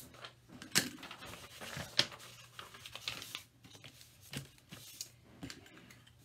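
Paper rustling and sliding on a tabletop as a scrap sheet is brought in and handled, with a couple of sharp taps about one and two seconds in.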